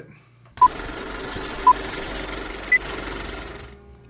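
Three short electronic beeps about a second apart, the first two at one pitch and the third higher, like a start countdown. They sound over a steady hiss that cuts off shortly before the end.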